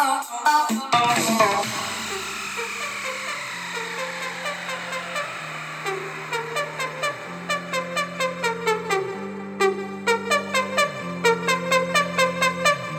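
Electronic dance music played through a GaleForce F3 6.5-inch two-way coaxial speaker with a horn tweeter, bi-amped with the tweeter and woofer on separate amplifiers. A falling synth sweep runs through the first few seconds, then a stepping bass line comes in with a steady beat that gets busier in the second half.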